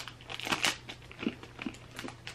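Someone chewing a bite of crunchy chocolate frog, a chocolate with a crisp texture like a Crunch bar: faint, irregular crunching clicks.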